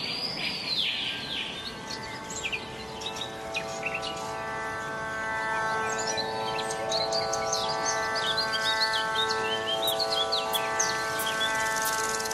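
Instrumental intro of a devotional song: a sustained chord of several steady tones swelling slowly, with bird chirps scattered over it and a brief shimmering chime-like sweep at the start.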